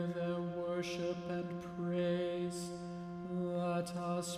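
A man chanting a litany petition on one reciting pitch, with a steady held tone underneath.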